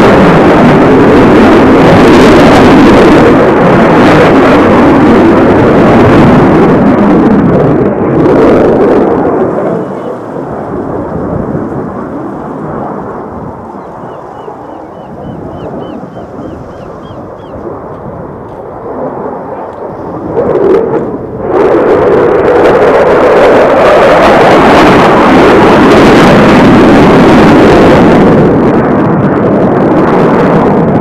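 Eurofighter Typhoon's twin EJ200 jet engines, a loud, rumbling roar. It falls away to a lower rumble about nine seconds in and surges back loud just after twenty seconds as the jet turns back toward the microphone.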